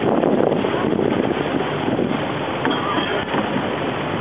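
A Thai longtail boat under way: a steady rush of wind on the microphone and water along the hull, over the boat's running engine.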